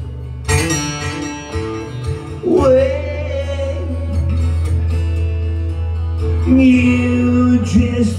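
Male voice singing live in long held notes over an acoustic guitar, with a steady low bass from the guitar under the vocal.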